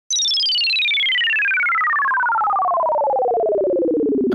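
Electronic falling-tone sound effect: a pure tone that starts suddenly and slides smoothly and steadily down from very high to low pitch, with a second tone sliding down alongside it, like a cartoon falling whistle.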